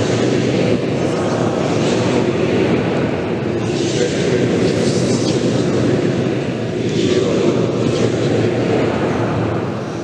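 A congregation reciting a prayer aloud together in a reverberant church: many voices speaking in unison, blurring into a steady, loud murmur with no pauses.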